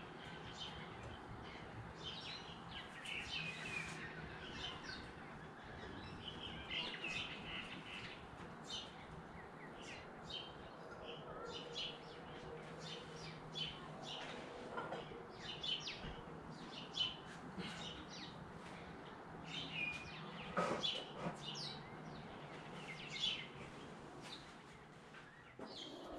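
Birds chirping outdoors: many short, faint calls scattered throughout, over a faint low steady hum.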